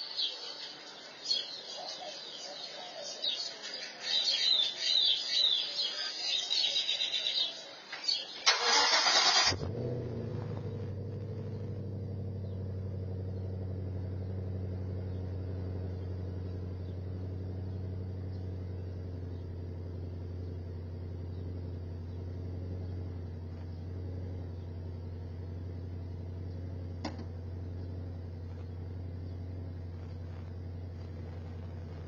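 Ford Mustang engine started: a short loud burst of cranking as it catches about eight and a half seconds in, then a steady, low idle for the rest. Heard through an outdoor security camera's microphone.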